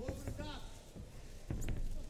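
Faint shouting voices over the hall's ambience, with one sharp thump about a second and a half in as the two fighters collide into a clinch.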